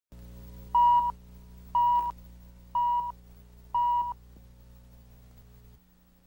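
Countdown leader beeps: four short, high-pitched test-tone beeps, one a second, over a steady low hum that cuts off just before the end.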